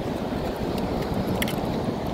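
Steady low rumble of wind on the microphone over the wash of surf on the shore, with a couple of faint clicks about halfway through.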